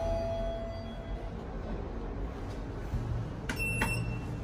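A lift's arrival chime dies away in the open car. Near the end, a car button is pressed with two sharp clicks and a short high beep, registering a call to the first floor.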